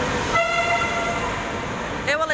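Al Boraq double-deck high-speed train (Alstom Euroduplex) moving slowly along the platform, a steady rolling rumble, with a flat high-pitched tone starting a moment in and holding for about a second and a half.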